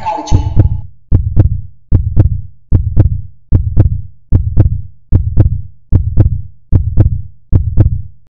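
Heartbeat sound effect: a steady double thump, about 75 pairs a minute, each pair fading out before the next.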